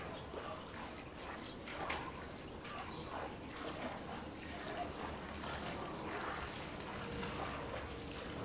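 Outdoor swimming-pool water sounds: rippling water lapping at the pool edge close by, with a swimmer's splashing further off, as a steady low wash dotted with small splashes.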